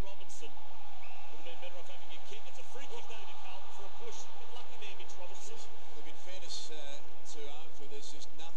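Football broadcast audio: a commentator talking over steady stadium crowd noise, with a constant low hum underneath.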